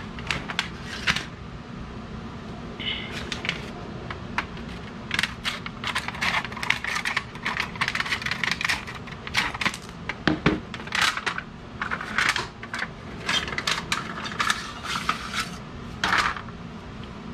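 Stainless-steel heat-treating foil packets being cut open with tin snips and crinkled apart, with knife blades clinking as they come out. The sound is a run of irregular crackles and sharp metallic clicks, busiest in the second half.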